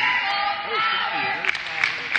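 Cheerleaders chanting a cheer in a gymnasium, their voices held in long shouted notes, with a couple of sharp claps near the end.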